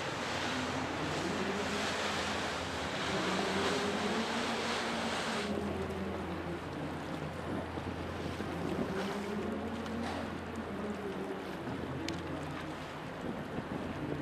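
Harbour boat engines droning low and steady, with water splashing and wind hiss on the microphone. About five and a half seconds in the hiss drops away sharply, leaving mainly the low engine hum.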